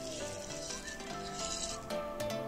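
Small pumice stones poured from a cup into a glazed ceramic pot, trickling onto a layer of stones with a steady gritty hiss. They are being laid as a drainage layer in the bottom of the pot. Soft background music plays underneath.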